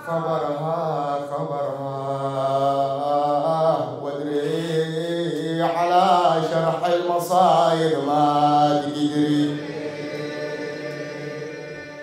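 A man's voice chanting a mourning elegy in long, wavering, melismatic held notes, amplified through a microphone, fading near the end.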